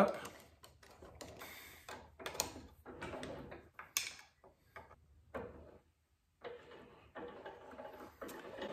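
Scattered metal clicks, taps and short scrapes as a screwdriver tightens the gib screw on a 1935 South Bend lathe's cross slide, with a couple of sharper taps about two and a half and four seconds in.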